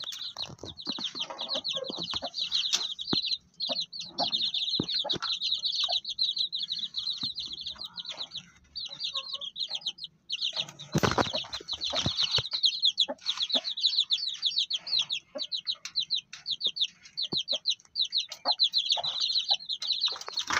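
Young chicks peeping in a constant stream of rapid high cheeps, with a hen clucking now and then and scattered light knocks. A short louder burst comes about eleven seconds in.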